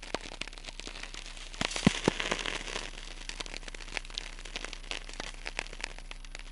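Crackling static: a dense, irregular run of clicks and pops over hiss and a steady low hum, with a louder burst of crackle about two seconds in.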